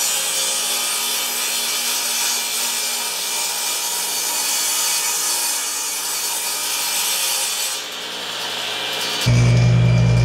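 Table saw blade cutting dado kerfs across wooden support boards: a steady whirring rasp that dips briefly about eight seconds in. Near the end the sawing gives way to louder music.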